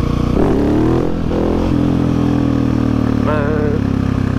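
Husqvarna 701 Supermoto's single-cylinder engine accelerating, its pitch climbing for about a second, then running at a steady pitch. The rider says the exhaust doesn't sound right and needs a repack.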